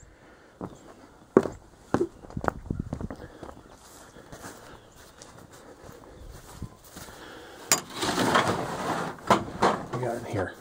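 Footsteps across grass with a few sharp knocks, then a click and about a second of scraping and rattling as a metal-sided shed door is unlatched and opened.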